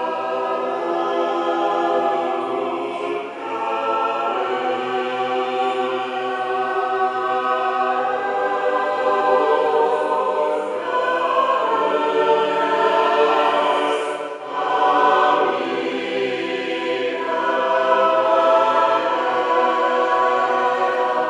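Mixed choir of women's and men's voices singing a sustained passage, with short breaks between phrases about three seconds in and again about fourteen seconds in.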